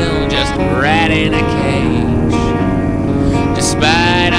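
Background music: a song with sustained chords and gliding melodic lines, loud and steady throughout.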